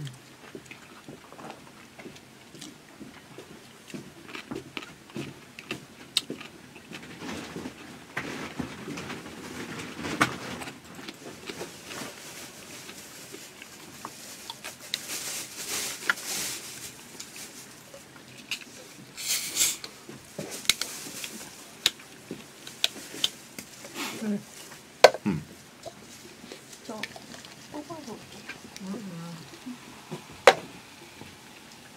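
Eating and handling sounds close to a studio microphone: scattered clicks and knocks of chopsticks, a paper cup and small objects on a desk, with a couple of short hissing rushes midway.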